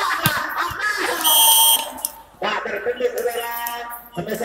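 A volleyball referee's whistle blown once, a loud steady blast of about half a second, a little over a second in, ending the rally. Crowd voices and shouting run underneath, with a sharp knock of the ball being struck just before.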